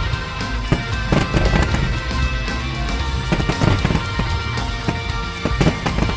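Fireworks going off in irregular pops and booms, several bursts over the six seconds, over music that plays throughout.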